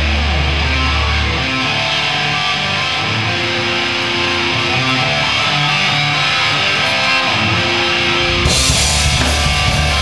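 Live rock band starting a song: an electric guitar plays a riff alone after a low held note, then drums with cymbals and bass guitar come in about eight and a half seconds in.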